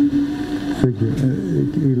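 A steady humming drone that cuts off suddenly just under a second in, followed by a man speaking Spanish.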